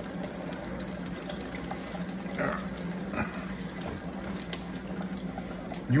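Kitchen faucet running steadily, cold water splashing onto tomatoes in a stainless steel colander as hands rub them clean.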